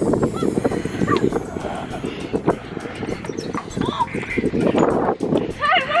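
Children squealing and calling out in short high cries during a chase game, over footsteps and knocks on the playground equipment and wood chips.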